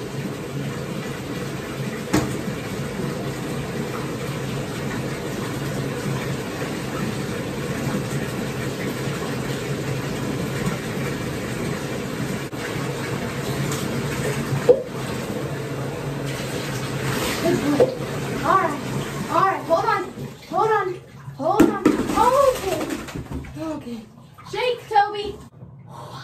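Water running steadily in a bathtub as a dog is rinsed, stopping about 20 s in. A voice follows in the last few seconds.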